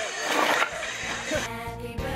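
Music mixed with a jumble of outdoor voices, then about one and a half seconds in it changes to a different piece of music with steady held notes.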